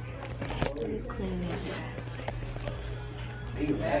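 Handling noise of a camera being wiped with a cloth: rubbing and a few sharp clicks, the strongest about half a second in. Faint background voices and a steady low hum sit underneath.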